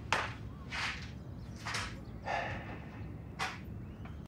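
A few short, soft rustles about a second apart over faint room noise.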